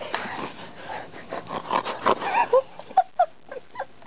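A person making playful wordless monster noises behind a rubber Halloween mask: breaths, then short pitch-bending yelps, breaking into choppy bursts of laughter near the end.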